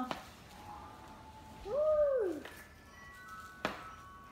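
A spoken "go slow" followed by a drawn-out "woo" exclamation that rises and then falls in pitch. A single sharp click comes near the end.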